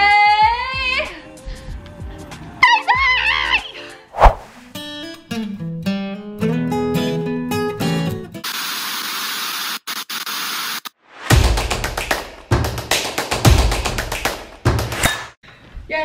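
A woman's voice calling out in a long, sliding, singsong way, followed by music: pitched notes, then a stretch of hiss, then heavy beats in the last few seconds.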